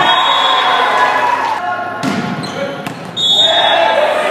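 Players and spectators shouting in a gymnasium during a volleyball match, with a couple of sharp knocks of the ball striking the hardwood floor in the middle.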